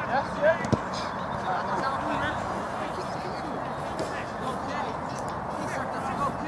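Indistinct shouts and calls from players over a steady background hubbub, with two sharp knocks in the first second as the football is kicked.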